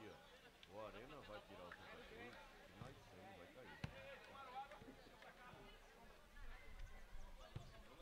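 Faint pitch-side sound of a 7-a-side football game: distant shouting voices of players and onlookers, with one sharp knock of the ball being kicked about four seconds in.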